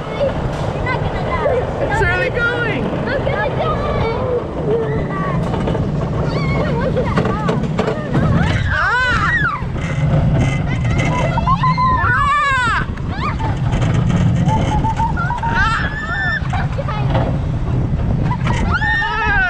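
Wild mouse roller coaster car running along its track with a steady low rumble, through the lift hill and the turns on the top level. Several short high-pitched squeals that rise and fall come at intervals over it, the loudest about halfway through and two-thirds of the way in.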